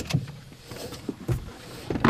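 Person shifting and turning in the driver's seat of a parked car: a sharp click at the start, then rustling and small knocks, with a dull thump about a second and a half in.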